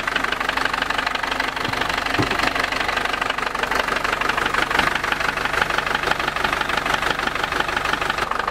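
Yanmar 4LH four-cylinder marine diesel running steadily with a rapid, even clatter, heard close to the open engine hatch. The engine is being tested for black smoke and lack of power, which the mechanic puts down to a bad turbo holding back its revs.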